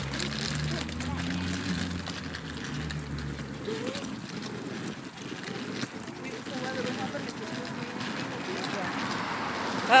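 Street traffic: a motor vehicle's low engine hum in the first few seconds, fading out a little before halfway. Then steady street noise with faint voices.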